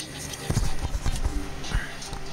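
Handling noise: a quick run of dull knocks and bumps from about half a second in to near the end, as the camera and the lantern with its new plastic handle are moved about in the hand.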